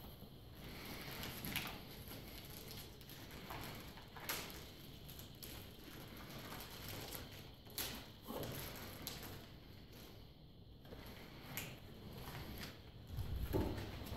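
Faint rustling and scattered small clicks and taps as medical supplies are handled: gloves, plastic packaging and syringes. There is a duller, louder bump near the end.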